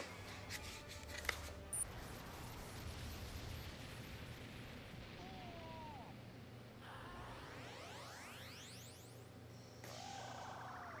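Faint anime soundtrack playing quietly: low background music and sound effects, with a few rising glides in pitch about seven seconds in.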